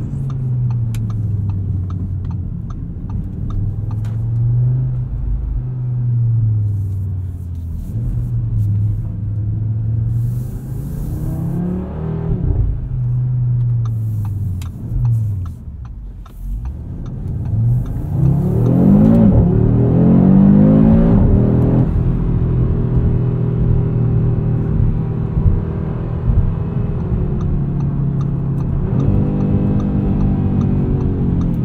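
The 2022 Audi RS 3's 2.5-litre turbocharged inline-five, heard inside the cabin, rising and falling in pitch with throttle and the upshifts of its dual-clutch gearbox. It eases off around the middle, then pulls hard again for a few seconds, dropping sharply at a gear change. After that it settles to a steady cruise and begins climbing again near the end.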